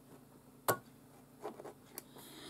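A small pair of scissors snipping the embroidery thread at the machine's needle: one sharp click, followed by a few faint handling clicks.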